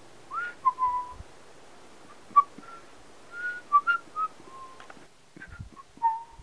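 Someone whistling a short tune: a string of short notes at around the same pitch, with upward slides into some of them and a couple of held notes, over a faint hiss.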